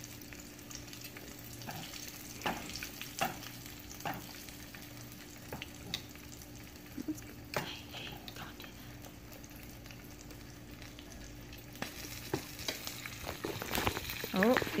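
Bluegill pieces pan-frying in hot oil in a skillet: a steady, quiet sizzle with scattered crackles and pops.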